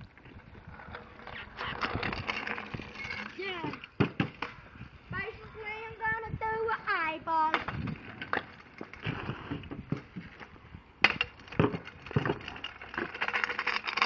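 Children's high voices calling out, with sharp clacks of a stunt scooter's deck and wheels hitting asphalt. The loudest clack comes about eleven seconds in, another about four seconds in.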